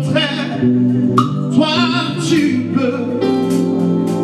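Live gospel worship song: a man singing over sustained keyboard chords, with the band accompanying.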